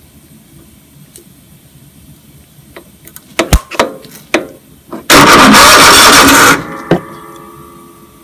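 Sharp snaps of arcing as a steel chisel bridges the two posts of a lawn mower's starter solenoid, then about a second and a half of the starter cranking the engine over before it cuts off and fades. The engine turning over with the solenoid bypassed means the solenoid is likely dead.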